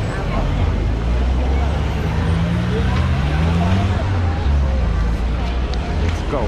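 Busy street noise: people talking all around and a motor vehicle's engine running, its low hum rising in pitch about two seconds in as it pulls away.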